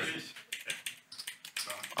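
Poker chips clicking against each other as they are handled at the table: an irregular run of short, sharp clicks.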